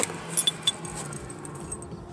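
Small metal trinkets and a bottle opener on a key ring clinking lightly a few times within the first second as a hand picks through a box, with plastic bags rustling.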